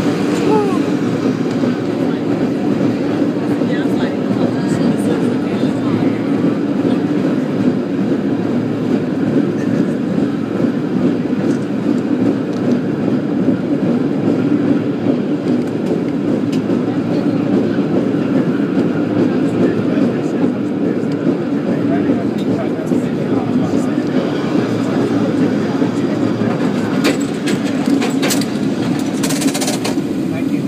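San Francisco cable car running along its rails, a steady rumbling clatter heard from on board, with a run of sharper clicks near the end.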